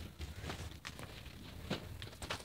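A few soft footsteps on a carpeted floor, over the low rumble of a handheld phone being carried.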